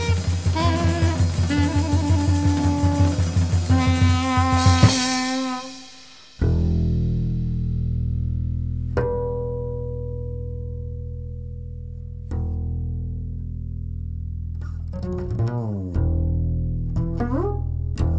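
Jazz recording: the full group with drums plays for about five seconds, then drops away, and a double bass continues alone with long, ringing low notes, followed near the end by a run of quick plucked notes.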